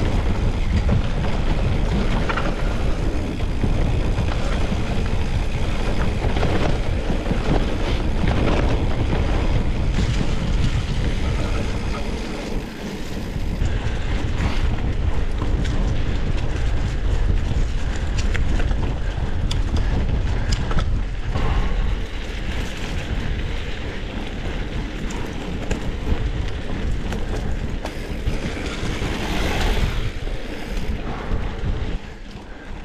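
Wind buffeting the microphone over the rush of mountain bike tyres rolling on a dirt trail, with frequent small clicks and knocks as the bike rattles over bumps. The noise is steady and dips briefly about twelve seconds in.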